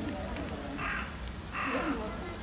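A crow cawing twice, two short harsh calls about three quarters of a second apart, over a low murmur of voices.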